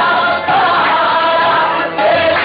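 Qawwali group singing: several male voices sing a line together in chorus over the music.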